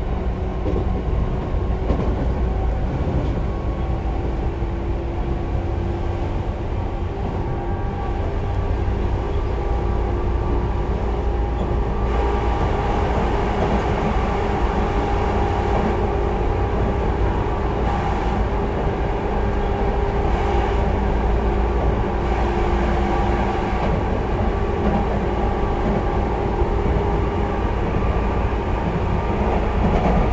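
Interior running sound of a Tobu 10030-series electric train, recorded in a field-chopper-controlled motor car: a steady rumble of wheels on rail with the hum of the traction motors and gears. The sound grows louder and brighter about twelve seconds in.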